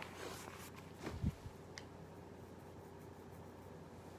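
Quiet small-room tone with a steady fan hum, faint handling of a paper magazine, and one soft thump about a second in.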